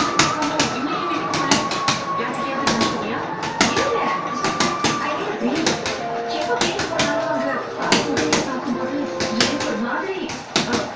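Quick, irregular sharp slaps and taps, several a second, from a boxer shadowboxing in boxing gloves, with background voices underneath.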